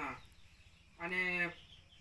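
A man's reading voice breaks off, and after a short pause he holds one drawn-out hesitation syllable, 'unn', for about half a second, starting about a second in.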